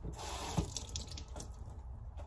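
Water from a kitchen tap running into the sink while dishes are rinsed, with a sharp knock about half a second in and a few lighter clinks of dishware.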